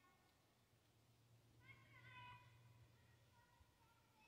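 Near silence, with a faint, high-pitched distant voice briefly about two seconds in.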